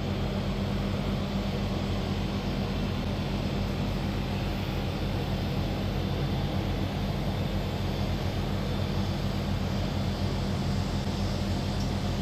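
A steady, even machine hum, low and droning, like a motor or engine running at constant speed.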